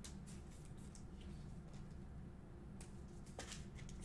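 Faint clicks and slides of glossy trading cards being flipped through by hand, over a low steady hum.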